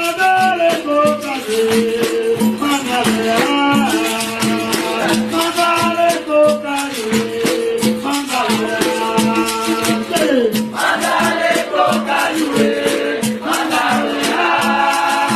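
Capoeira music in São Bento rhythm: a berimbau with the shaken caxixi rattle and percussion keeping a driving, evenly repeating beat under voices singing a melody.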